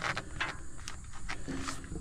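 Hand handling a silicone intercooler boot and its clamp on a semi-truck engine: a few light knocks and a brief rubbing sound about a second and a half in, over a faint steady background.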